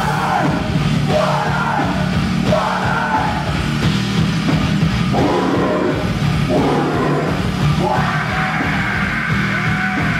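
Heavy metal band playing live: drum kit and distorted guitars, with a singer yelling the vocals over them.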